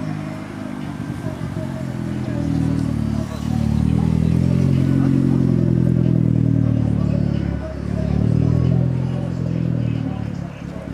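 Hyundai Genesis Coupe's engine and exhaust as the car rolls slowly past at low revs: a deep, steady note that swells as it comes alongside a few seconds in, dips briefly near the end, then picks up again as it pulls away.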